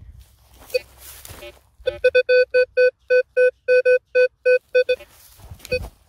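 Metal detector beeping: a run of short electronic beeps, all on one pitch, about four or five a second for some three seconds, with a few single beeps before and after. The beeping signals a metal target in freshly dug soil.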